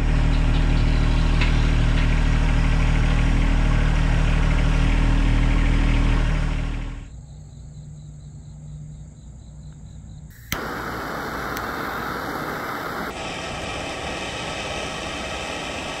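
John Deere compact tractor's diesel engine running, loud and close for about the first seven seconds, then quieter after a cut. From about ten and a half seconds a steady rushing noise runs under the engine.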